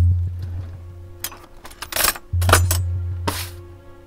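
Film score with two deep, sustained bass notes, one at the start and one a little over halfway, each fading slowly. Over it, several sharp glass clinks and short handling noises as glasses and a bottle are handled on a counter.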